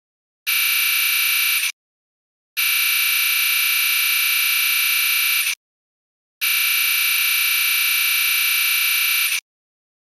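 Synthetic high buzzing tone from a Scratch project. It sounds in three steady, unchanging stretches of about one, three and three seconds, separated by short silences, while speech-bubble text types out.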